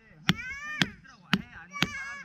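Metal peg hammer driving a metal tent peg into grassy ground: four sharp strikes about half a second apart.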